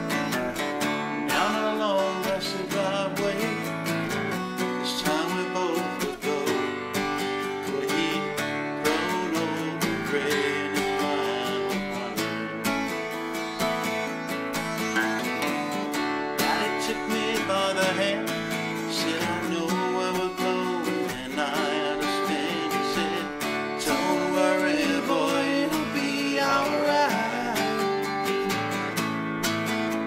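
Two acoustic guitars playing an instrumental break of a country song, chords strummed with a picked melody line over them.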